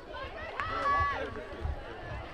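A single voice calling out, one held shout lasting about half a second, over low outdoor background noise.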